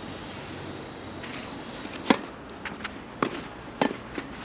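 Tennis racket strings hitting a ball during a doubles rally: a sharp pop about two seconds in, the loudest, then a quick run of further hits and bounces over the next two seconds, a double one near the end.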